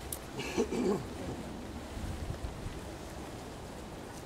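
Steady wind rumble on the microphone, with one brief sound about half a second in.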